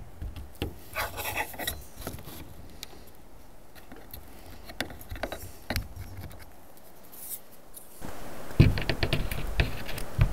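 Scattered rubbing and scraping with small clicks as a sealant tube's metal nozzle and a thin metal rod work silicone around screw heads on clear plastic roofing sheet. Near the end it turns louder, with heavy low bumps.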